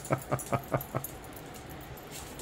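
A person's laughter trailing off in quick, evenly spaced pulses that fade out about a second in, over light jingling from a dog's metal collar tags.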